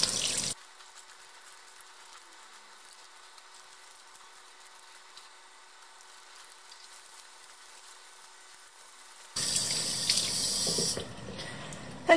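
Tap water running over a K&N air filter and splashing into a sink. It is loud for the first half second, drops suddenly to a faint hiss, and comes back loud about nine seconds in before easing off near the end.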